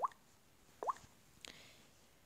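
Two short, faint mouth pops, each rising quickly in pitch, about a second apart, then a faint click about a second and a half in.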